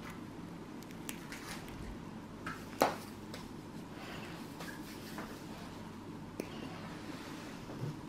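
Stainless nail nippers snipping at a thick, fungus-infected big toenail: a few short, sharp clicks, the loudest a little under three seconds in, over a low steady hum.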